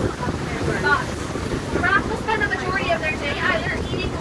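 Open-sided safari truck driving along a rough dirt track: steady engine and road noise with wind buffeting the microphone, and indistinct voices over it.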